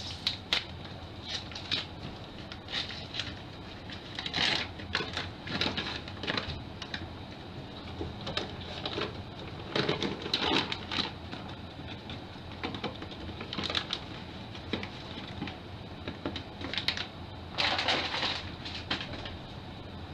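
A flour bag rustling in bursts as flour is tipped into an empty stainless-steel stand-mixer bowl, with scattered light clicks and knocks from handling, over a faint steady hum.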